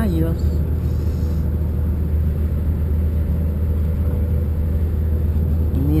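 Steady low rumble of a moving vehicle heard from inside its cabin, an even running noise with no change in pace.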